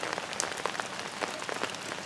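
Steady rain falling, with many separate drops striking close by as sharp ticks.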